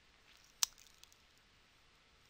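A single short, sharp click a little over half a second in, followed by a much fainter tick about a second in, over near silence.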